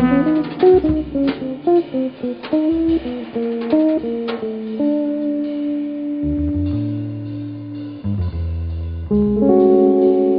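Live jazz trio of hollow-body electric guitar, upright bass and drums. The guitar plays a quick run of single notes, then lets a chord ring from about five seconds in, with bass notes moving beneath and light drum and cymbal hits. A new full chord comes in near the end.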